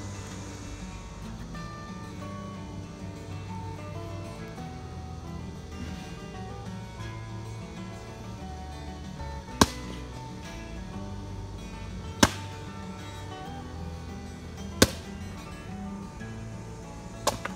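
Background music throughout, with three sharp blows of a long-handled tool about two and a half seconds apart in the second half; the blows are the loudest sounds.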